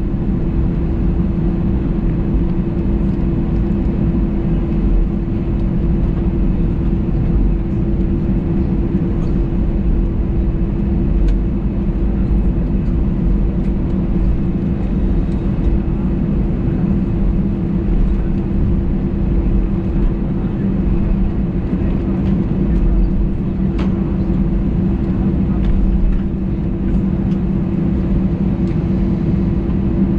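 Airbus A320-200 cabin noise while taxiing: the jet engines running at idle thrust, heard from inside the cabin as a steady hum over a low rumble.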